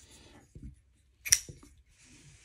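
UrbanEDC F5.5 titanium folding knife flicked open, its blade locking with one sharp click a little past halfway, followed by a softer click; light handling noise around it.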